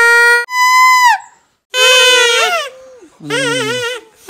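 Homemade plant-stem whistles blown in about four short, loud toots. Each holds one steady pitch, except that the second is higher and drops at its end and the last wavers up and down.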